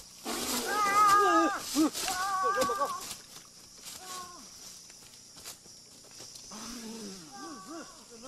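High-pitched wailing cries from a person's voice, loud for the first three seconds, then fainter, lower cries near the end.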